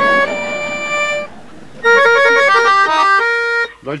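Button accordion playing: a held chord for about a second, then after a short dip a quick run of short, detached notes.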